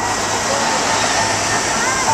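Steady noise of road traffic on a busy city street, cars passing close by.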